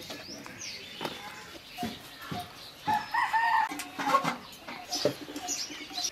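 Domestic chickens calling, with the longest, loudest call about three seconds in, among a few light knocks.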